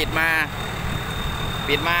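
A man speaking Thai in short phrases over the steady low rumble of a rice combine harvester's engine running in the field.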